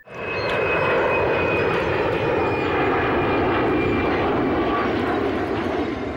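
Steady drone of an aircraft in flight, a dense rushing engine sound with a faint high whine that fades out about four seconds in. It comes in abruptly.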